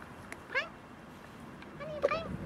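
A dog's rubber squeak toy squeaks as the Papillon bites down on it: one short, high squeak about half a second in, and another starting near the end.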